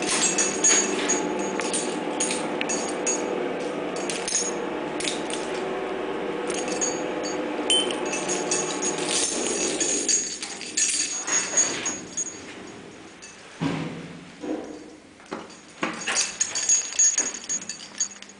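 Old freight elevator car travelling: a steady motor and drive hum with light rattling fades out about ten seconds in as the car comes to a stop. It is followed by a series of separate clicks and knocks from the car's mechanism.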